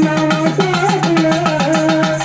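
A village folk band playing dance music: drums keep a fast, even beat of about seven strokes a second under a held melody line that shifts between a few long notes.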